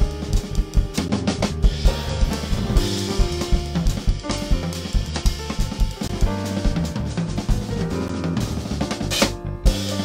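A live jazz trio playing: drum kit with busy snare, bass drum and cymbal work over sustained bass notes and keyboard chords. The cymbals drop out briefly near the end.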